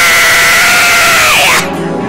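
A woman's long, loud scream into a handheld microphone, a held cry of fervent prayer, steady in pitch before it slides down and breaks off about a second and a half in. Church music keeps playing beneath it.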